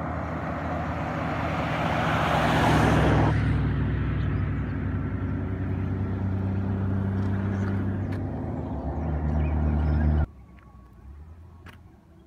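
Road vehicle passing close by: tyre and engine noise swell to a peak about two to three seconds in, then a steady low engine hum carries on until the sound cuts off abruptly about ten seconds in, leaving a much quieter background.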